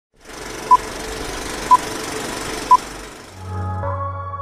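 Film countdown-leader sound effect: a steady projector-like rattle and hiss with a short, high beep once a second, three beeps in all. Near the end the rattle gives way to keyboard music with a bass line.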